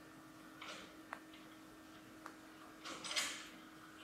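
Quiet room tone with a steady low hum. A single faint click comes about a second in and a softer one a little past two seconds, with two brief soft rustling swishes.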